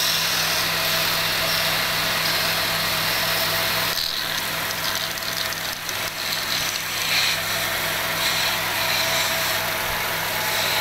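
Wood lathe's electric motor running with a steady hum, with the hiss and scrape of a hand tool cutting a small piece of spinning wood. About four seconds in, the cutting noise turns rougher and uneven while the motor hum carries on.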